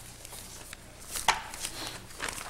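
Papers being handled and shuffled on a table, with scattered light clicks and one sharp knock about a second and a quarter in, over a steady low hum.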